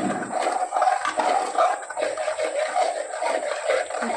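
Steel ladle stirring a runny masala gravy in an aluminium kadai: continuous, uneven scraping of the ladle against the pan with the gravy sloshing.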